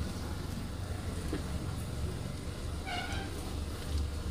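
Steady low rumble of a car heard from inside the cabin, with a brief high-pitched tone about three seconds in.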